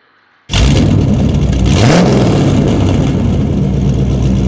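An engine revving, laid over the end graphics as a sound effect: it starts suddenly about half a second in, with one rising rev and a brief whoosh about two seconds in, then runs on steadily and loudly.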